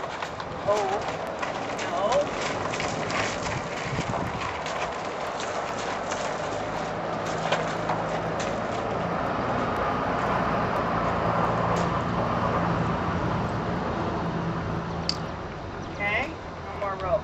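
A horse's hooves stepping and scuffing on gravel, heard as scattered short clicks and crunches, over a steady rushing background with a low hum that swells from about halfway through and fades near the end.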